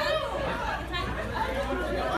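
A group of people chatting over one another, voices overlapping with no single clear speaker.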